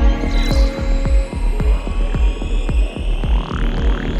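Progressive psytrance: a steady kick drum and rolling bassline several times a second under held synth chords, with a falling synth sweep just after the start and rising sweeps near the end.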